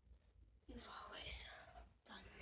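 A person whispering softly, starting about two-thirds of a second in, after a near-silent start.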